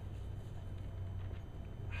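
A pause between spoken phrases: a steady low hum and faint room noise, with no other distinct sound.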